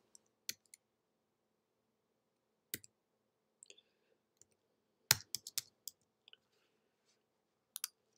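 Faint, scattered clicks of typing on a computer keyboard, with a quick run of keystrokes a little past the middle.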